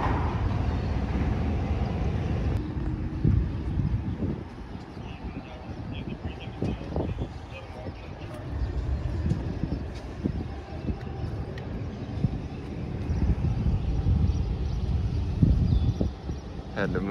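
Outdoor ambience: an uneven low rumble of traffic and wind on the microphone, swelling and easing, with a few faint knocks.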